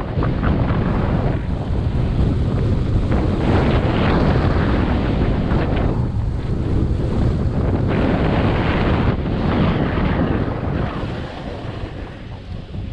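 Wind buffeting the camera microphone while a snowboard rides fast down a packed, tracked slope, its edges scraping the snow in surges of hiss every second or two. The sound eases off near the end as the rider slows.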